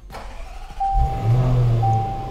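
A 2019 Overfinch Range Rover's engine starting on the push button: the starter turns briefly, the engine catches about a second in with a low burst and settles into a strong, steady low idle. A thin, steady electronic tone sounds alongside in roughly one-second stretches.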